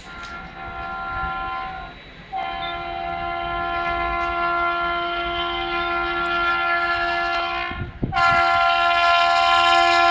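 Air horn of an approaching WAP-7 electric locomotive sounding long steady blasts: one of about two seconds, a longer one of about five seconds, then a louder one starting about eight seconds in and still going at the end. The horn grows louder as the train nears.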